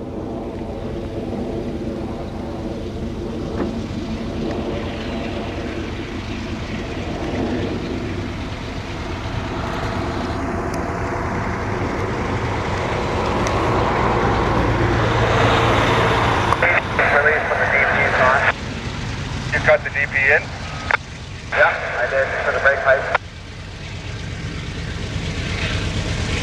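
GE diesel locomotives, a CN C44-9W lead unit with more units behind it, working hard as an intermodal train approaches. The engine drone grows steadily louder and fuller through the first two thirds, then the sound turns choppy, cutting in and out in short bursts.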